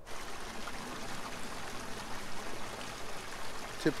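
River water lapping and trickling against the rocks at the shoreline, a steady watery wash.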